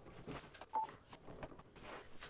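A single short electronic beep a little before one second in, amid faint rustling and light clicks of cables being handled.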